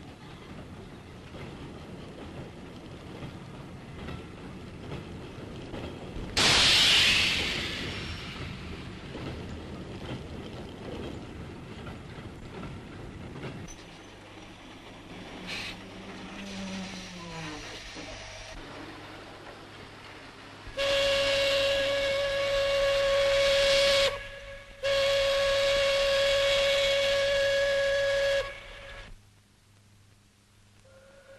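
Freight train running over the rails with a steady rumble, broken about six seconds in by a sudden loud hiss. Later a steam locomotive whistle sounds two long, steady blasts, with a short gap between them.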